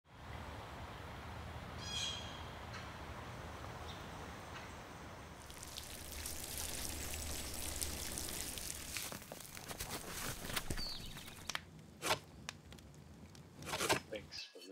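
Outdoor ambience with a single bird call about two seconds in, then water pouring and splashing down over a person from about five seconds in. Several sharp knocks follow near the end, the last and loudest just at the close.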